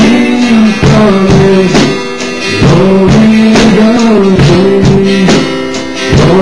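Live worship song: voices singing long held notes over guitar accompaniment with a steady beat.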